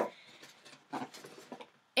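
Quiet room with a few faint rustles and light taps of items being handled as the next item is reached for in a subscription box.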